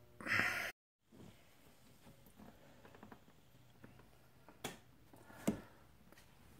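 A near-quiet room with a brief rustle right at the start and two faint sharp clicks near the end, about a second apart.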